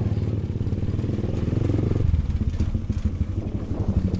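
Motor scooter engine running while it is ridden, a steady low drone whose upper tone thins out about two seconds in.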